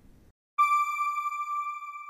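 A single electronic chime tone from a logo sting, starting suddenly about half a second in and ringing on at one steady pitch while it slowly fades.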